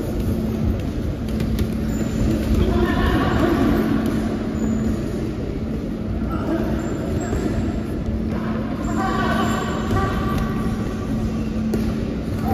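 Indoor sports-hall ambience: a steady low hum over a rumble, with voices rising a couple of times, about three seconds in and again near nine seconds.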